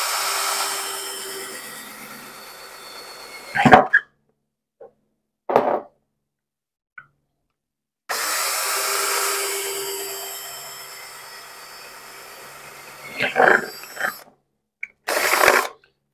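Cordless drill boring holes through the metal lids of glass jars, two runs: each starts at its loudest and fades over about three seconds. Each run is followed by a few short knocks.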